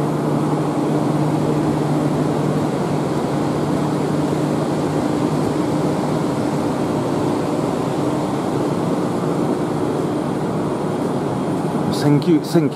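A Hiroshima Electric Railway 5100-series low-floor tram stands at the platform with its onboard equipment running. It gives a steady low hum over an even rushing noise.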